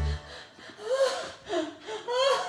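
Breathless, high-pitched laughter with gasps for air, in two loud bursts. A held music chord cuts off just as it begins.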